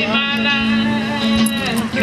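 A man's voice in drawn-out exclamations over music with a steady held note.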